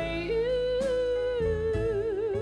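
A woman singing one long held note with a small live band accompanying her on drums; the note steps up slightly in pitch just after the start.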